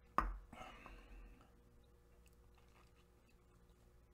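A coffee mug being handled during a tasting: one light knock near the start, then a brief soft sip of under a second, followed by quiet room tone.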